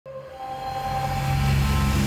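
Title-sequence sound design: a whooshing swell that grows steadily louder, over held synth tones and a low drone, building toward the intro's hit.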